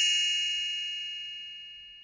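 A bell-like chime with several clear high tones ringing out and fading steadily away: the page-turn signal of a read-aloud picture book.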